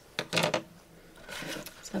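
Light scratching and rubbing against a ceramic dish: a short scrape about a third of a second in and a fainter one a little past the middle.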